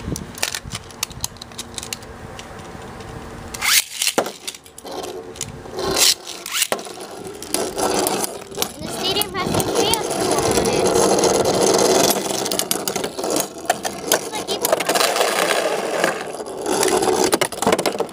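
Two metal-wheeled Beyblade spinning tops launched into a plastic stadium, with sharp clicks about four and six seconds in. They then spin and clash, making a dense whirring rattle of scraping and knocking that is loudest through the middle and thins out near the end as they slow.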